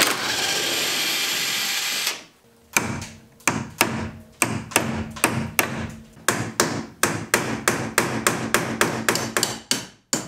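About two seconds of steady power-tool noise, then a hammer driving a brass punch against steel, about three sharp strikes a second, each with a brief metallic ring.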